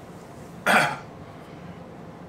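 A man's single short, loud cough, about two-thirds of a second in.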